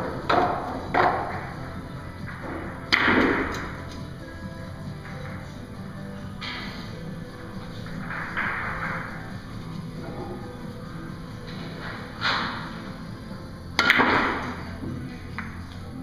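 Heavy billiard balls knocking and clacking as they are set out by hand on a Russian billiards table: a handful of separate sharp knocks, the loudest about three seconds in and near the end, over steady background music.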